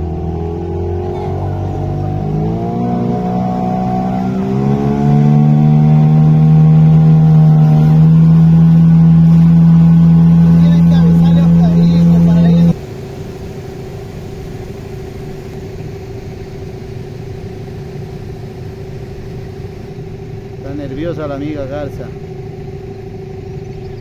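Boat motor throttling up, its pitch rising in steps over several seconds, then running loud and steady until it cuts off suddenly about halfway through. A lower, steady hum carries on after it.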